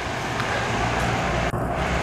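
Road traffic: a car going by, a steady rush of tyre and engine noise that swells a little toward the middle.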